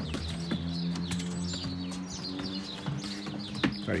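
Small birds chirping repeatedly in short falling notes over a steady low drone.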